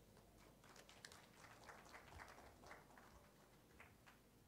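Near silence: faint room tone with a few soft, scattered taps.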